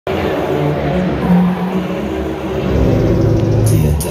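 Loud, low droning intro sound played through an arena PA, sustained low notes shifting slowly in pitch. A brief burst of higher hiss comes near the end.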